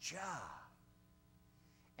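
A man's short, breathy sigh, its pitch rising and then falling, in the first half second, followed by faint room tone.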